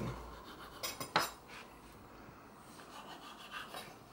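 A sharp kitchen knife cutting the crust off a slice of tiger bread and knocking on a wooden chopping board: a few short knocks about a second in, then fainter ones near the end.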